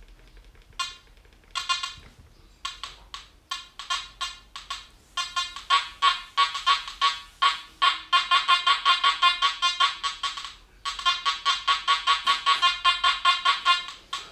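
Makro Gold Kruzer metal detector, set to its Micro program at high gain, sounding its target tone as a tiny thin gold chain is passed over the search coil: a few scattered beeps at first, then a fast run of high beeps, about four a second, with a brief break near the end.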